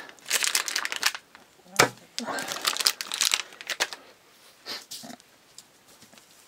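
Crinkly plastic wrapper being handled and crumpled, in several irregular bursts of crackling, with a single sharp click about two seconds in.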